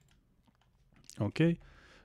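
A few faint computer keyboard clicks in a quiet room, then a short spoken "okay" a little past a second in.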